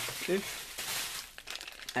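Plastic packaging crinkling and crackling as it is handled, with small scattered clicks.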